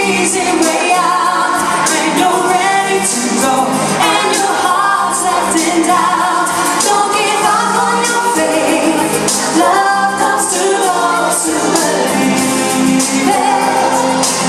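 A woman singing a pop ballad live into a handheld microphone, with instrumental accompaniment and possible backing vocals underneath.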